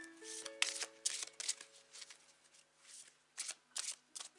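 A deck of oracle cards being shuffled by hand: a run of short card rustles and taps at irregular intervals, with the deck being split and restacked. Soft background music with long held notes plays underneath.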